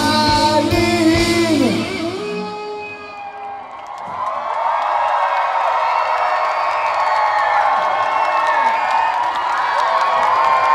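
Live punk rock band, with electric guitar and drums, playing loudly and breaking off about two to three seconds in. From about four seconds on, a big concert crowd cheers and shouts steadily.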